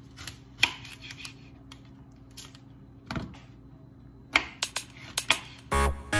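Kitchen knife slicing through a cucumber and knocking on a wooden cutting board, a series of separate sharp chops spaced irregularly, coming faster over the last couple of seconds. Background music starts just before the end.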